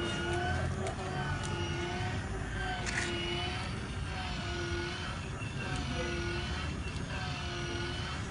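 Children's electric ride-on toy car in its dancing mode: its small drive motors and plastic wheels rumble steadily over brick paving. A short pitched tune repeats about once a second from the car's speaker.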